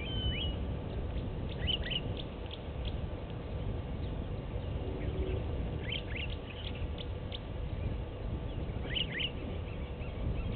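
Birds calling in short, high chirps that come in small clusters about two, six and nine seconds in, over a steady low background rumble.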